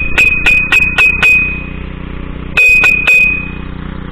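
An iron horseshoe knocked against a steel fence post: a quick run of about five ringing metal clanks, then three more about two and a half seconds in, each leaving a high ringing note. A walk-behind tractor's engine runs steadily in the background.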